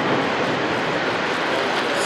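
Steady rumble and rush of a large concrete building collapsing into dust just after demolition charges have gone off.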